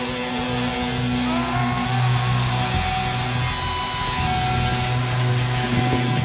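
Heavy metal band playing live, electric guitar to the fore, with held guitar notes bending in pitch in the first few seconds.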